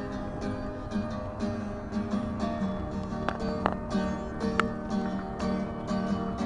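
Acoustic guitar played solo, chords plucked in a steady rhythm with no singing.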